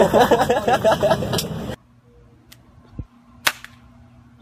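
Voices over the steady rumble of a vehicle cabin, cutting off abruptly under two seconds in. After that it is quiet except for a few sharp clicks and a low thump.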